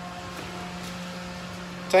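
Pump motor running with a steady hum, circulating water through a chemical tank to flush it out: one low constant tone with a few fainter higher tones above it.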